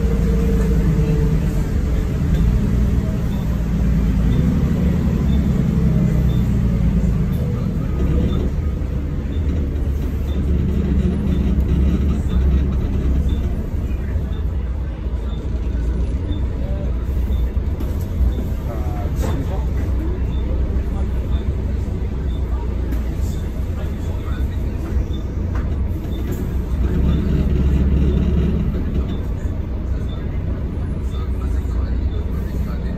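Volvo B12BLE bus heard from inside the passenger cabin: its rear-mounted diesel engine drones steadily, swelling in pitch a few times as the bus pulls away and eases off, over steady road and tyre noise.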